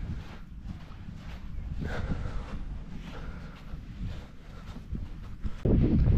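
Wind buffeting the microphone, a steady low rumble that gets much louder near the end.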